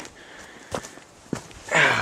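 Dry grass rustling faintly, with two sharp crackles about half a second apart, as the grass is disturbed.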